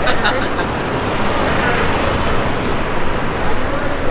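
City street traffic noise: a steady roar of road vehicles, with brief voices near the start.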